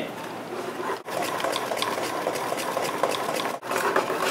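Breath blown out and drawn in through the mouthpiece of a homemade lung-powered reciprocating air engine, driving its piston and flywheel: a steady rush of air that breaks off briefly about a second in and again near the end, as the breath changes direction, with a few faint light ticks.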